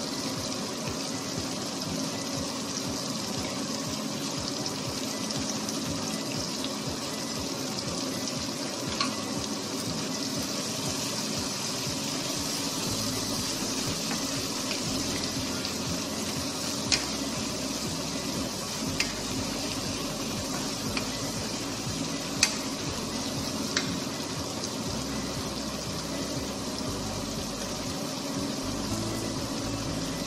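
Vegetables and fish sizzling steadily in a frying pan. A handful of sharp clicks from the wooden spatula knocking the pan are heard during the second half.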